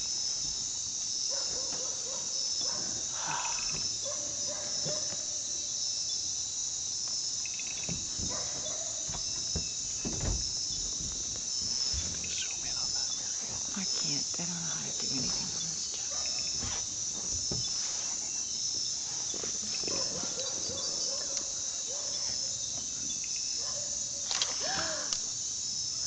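Dense night insect chorus: a steady high-pitched shrilling with a regular pulsing chirp running through it. There is a single low knock about ten seconds in.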